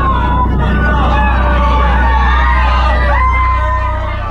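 Sirens wailing, their pitch rising and falling, mixed over a steady deep bass drone as a sound-effect outro to a rap track.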